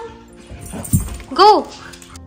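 A dog giving one short, high yip about one and a half seconds in, with a dull thud just before it.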